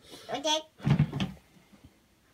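Short voices in a small room: a young child's high-pitched call, then a louder, lower voice with a sharp onset about a second in.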